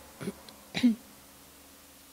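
A woman clears her throat twice into a handheld microphone, two short sounds within the first second, the second with a falling voiced note. After that only a faint steady hum remains.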